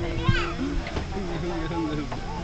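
A man singing a playful tune with long held notes to a toddler, with the child's voice in between, over the steady low rumble of an airliner cabin.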